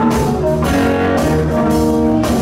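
Live rock band playing a blues-rock shuffle: electric guitar over organ and drums, with a steady beat.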